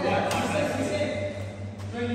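People talking in the background, with a steady low hum underneath.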